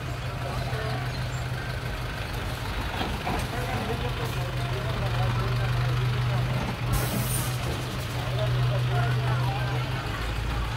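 Minibus engine idling steadily close by, with several people talking around it and a short hiss about seven seconds in.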